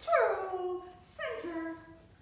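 A dog giving two drawn-out whining yelps in a row, each sliding down in pitch, the first the louder.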